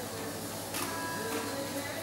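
Electric shaver buzzing steadily, with a brief rasp a little under a second in.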